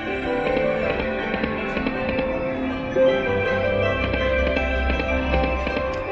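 Big Hot Flaming Pots slot machine playing its bonus-round music, with chiming tones and short clicks as the free reels spin. A low rumble swells over the last couple of seconds.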